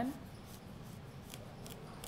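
Chef's knife slicing through a whole watermelon's rind to cut off its end, heard as a few faint crisp crunches.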